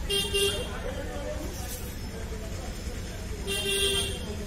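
A vehicle horn honks twice, each a steady half-second toot, one at the start and one about three and a half seconds later, over a constant low rumble of street traffic.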